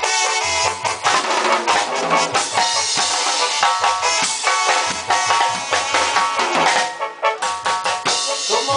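Live band music with a drum kit keeping a steady, driving beat under instrumental melody lines, without vocals.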